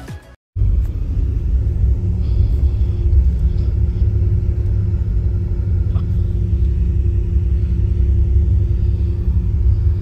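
Engine and road noise of a moving bus heard from inside the cabin: a steady low rumble with a faint drone above it, starting after a brief gap about half a second in.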